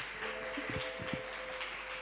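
A studio audience of children clapping, with a held two-note musical chord sounding over the applause from shortly after it begins.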